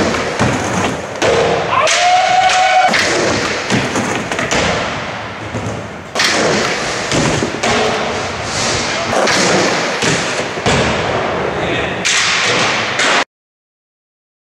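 Skateboard rolling on a concrete floor, with repeated clacks and thuds of the board popping and landing. A voice calls out about two seconds in. The sound cuts off suddenly near the end.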